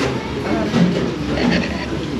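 Knife and fork cutting food on a ceramic plate, with a few light scrapes and clinks over a steady background rumble and faint voices.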